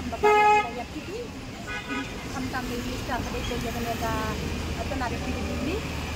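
Vehicle horns honking in street traffic: a loud half-second honk at the start, then shorter, fainter honks about two and four seconds in, over a steady low rumble of engines.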